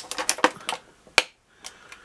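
Small parts being handled in clear plastic blister packaging and bags: a run of irregular light clicks and taps, with one sharp snap a little over a second in.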